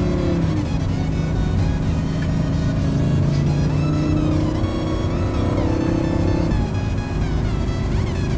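Lamborghini Huracán's V10 engine heard from inside the cabin, cruising at steady revs, with its note dropping about six and a half seconds in. Music plays over it.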